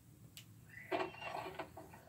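A short click, then a wooden door creaking open for about a second, heard through a TV's speakers.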